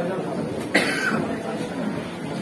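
One sharp cough about three-quarters of a second in, over low background voices.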